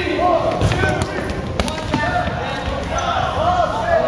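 Rubber dodgeballs being thrown and smacking off bodies and the wooden gym floor, a few sharp hits in the first two seconds, amid players' shouts echoing in the gym.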